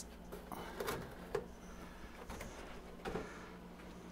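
Clear plastic humidity domes being lifted off plastic microgreen trays: a few faint, light plastic clicks and knocks, spread out over the seconds.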